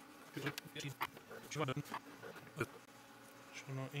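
A DSLR's noisy autofocus motor buzzing in several short bursts as it hunts for focus, with light rustling from a sheet of paper being handled.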